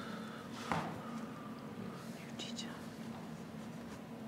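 Quiet, murmured voices in a meeting room over a steady low hum, with a single sharp knock a little under a second in.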